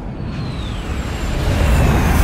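Jet aircraft flyover sound effect: a falling whine over a deep rumble that builds louder towards the end.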